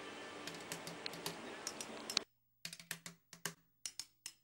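A run of light, irregular clicks, several a second, over faint room noise. A little over halfway through, the background noise cuts out and the clicks go on in silence.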